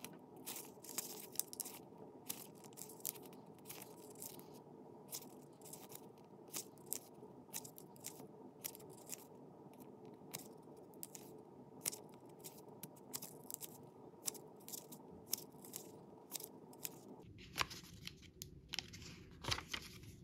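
Faint, quick flicks of paper as the pages of a small instruction booklet are turned one after another, about one or two short clicks a second.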